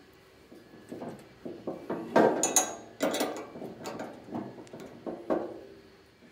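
Hands fitting a metal steering wheel and its bolt hardware onto a steel pedal car: a series of short knocks and clicks, the loudest cluster about two to three seconds in.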